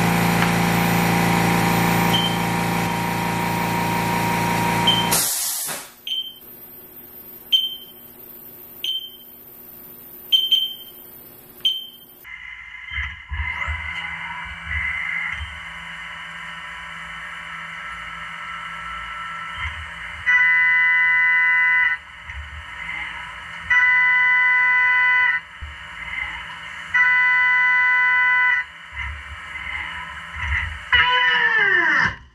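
Haas CNC mill running a cut with flood coolant. A loud steady machine sound cuts off about five seconds in and is followed by a few short high chirps. From about twelve seconds in the spindle runs steadily, with three loud, shrill two-second stretches as the carbide end mill cuts into the steel vise, a crash that marks the vise and ruins the end mill.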